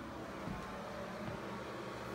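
Steady low background noise: room tone with a faint even hiss and hum, and no distinct event.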